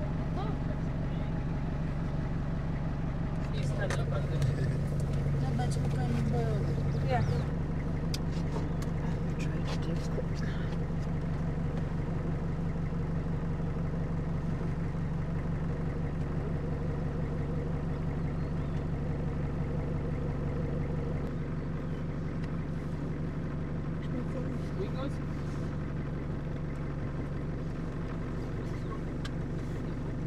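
Safari vehicle's engine running steadily on a game drive, its note shifting slightly about two-thirds of the way through.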